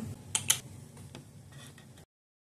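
A few small, sharp clicks: two close together about half a second in, the second louder, and a fainter one about a second later, over faint room hum.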